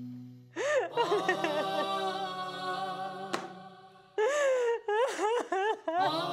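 A woman sobbing and wailing in broken, rising-and-falling cries over soft background music.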